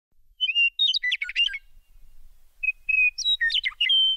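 Bird chirping: two short phrases about two seconds apart, each a held whistled note followed by a quick run of gliding chirps, over an otherwise silent background.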